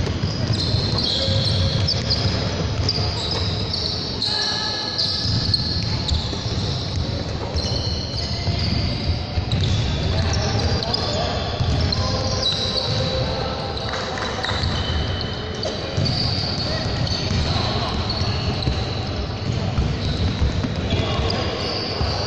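Basketballs being dribbled on a hardwood gym floor, steady repeated bounces, with short high sneaker squeaks and voices in the background.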